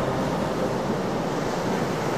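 Steady rushing noise of waves and wind at sea, with no distinct tones or separate impacts.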